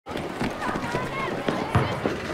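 Schoolyard ambience: distant children's voices calling out, with quick running footsteps passing close by.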